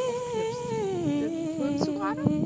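Christmas pop song on the soundtrack: a woman's voice holds one long note that slides slowly down in pitch, with a few light percussion clicks near the end.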